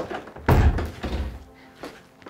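A wooden door shutting with a heavy thud about half a second in, over background music.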